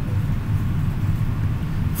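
A steady low rumble of background noise, even throughout, with nothing sudden standing out.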